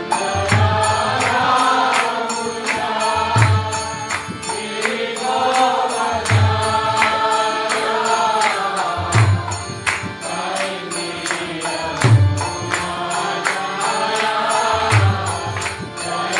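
Kirtan music: a man chanting a mantra in rising and falling phrases over harmonium chords, accompanied by a mridanga drum. The drum plays a busy run of sharp high strokes, with a deep bass stroke about every three seconds.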